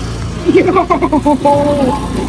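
A woman talking over a steady low motor hum.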